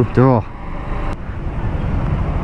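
Motorcycle running steadily at low speed in traffic, with road noise, heard from the rider's seat. There is a single sharp click about a second in.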